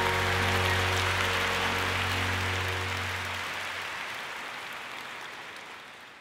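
The band's last held chord dying away, its low bass note cutting out a little past halfway, over audience applause that fades out toward the end.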